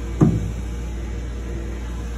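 Steady low hum of shop machinery or air handling, with one short sharp sound about a quarter second in.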